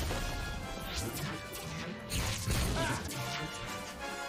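Action-cartoon soundtrack: orchestral score under crashes and impact sound effects, with the loudest hit a little after two seconds in.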